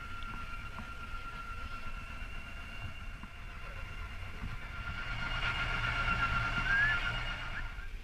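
Small dive boat's engine running under way: a low rumble with a steady high whine over it, growing louder in the second half and cutting off suddenly just before the end.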